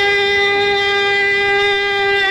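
One long note held at a steady, fairly high pitch, rich in overtones.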